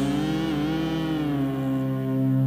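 1990s Thai pop-rock recording played from cassette tape: the band holds one long chord, one note bending slightly up and back down.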